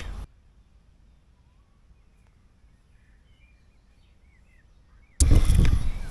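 Quiet woodland background with a few faint, short bird chirps. About five seconds in, a sudden loud rush of wind buffeting and handling noise on the microphone begins.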